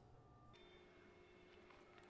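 Near silence: room tone, with a faint steady hum that comes in about half a second in.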